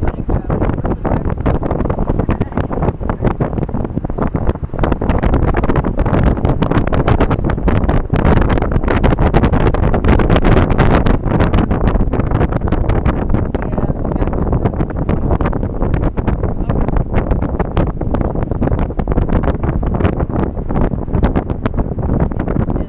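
Wind buffeting the microphone at the side window of a moving car, a loud, steady rush with constant flutter over the car's road noise.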